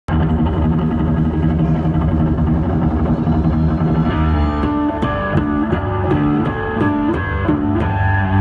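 Solo Yamaha electric bass played live through an amplifier. For the first four seconds it holds thick, dense low notes. Then it breaks into a fast, repeating melodic run of separate notes.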